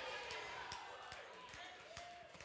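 A pause in speech: the echo of a man's voice dies away in a large hall, leaving faint room tone with a few faint, short sounds.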